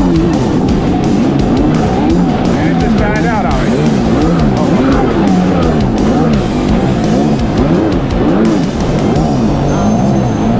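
Two-stroke twin engine of a 1998 Kawasaki 750 SXI Pro stand-up jet ski at speed, its pitch rising and falling over and over, with water spray hissing off the hull.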